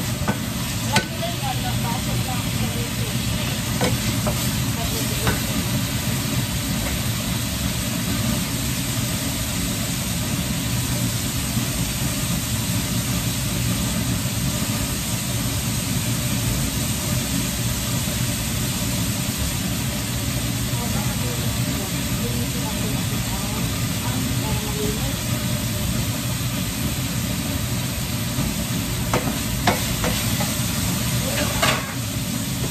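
Pork pieces sizzling steadily in oil in a nonstick frying pan while being stirred with a wooden spatula, which knocks against the pan a few times, most sharply about a second in.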